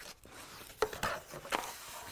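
A sewing kit's torn-open packaging being handled: soft rustling with a few light taps around a second in as the contents are taken out.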